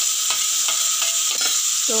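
Chopped tomatoes sizzling in hot oil in an aluminium kadhai, with a steel spatula scraping and clicking against metal a few times as they are stirred in.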